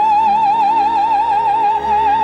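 Operatic soprano holding one high note with a wide, even vibrato over orchestral accompaniment, having stepped up to it from a lower note just as it begins.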